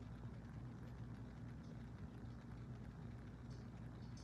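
Faint steady low hum with light hiss: room tone, with no distinct sound events.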